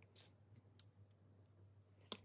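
Near silence, broken by a faint short hiss about a fifth of a second in and a faint click just under a second in, from a plastic squeeze bottle of matte medium being squeezed and handled.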